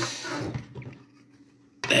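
Light handling noise from a circuit board being moved and turned over on a desk: a small click at the start, then faint rubbing that dies away to quiet.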